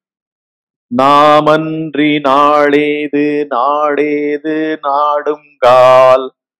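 A man chanting a verse in a steady, level-pitched voice, in short held syllables, beginning about a second in.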